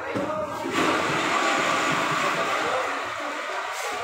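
A loud, steady rushing noise that swells in about a second in and fades near the end.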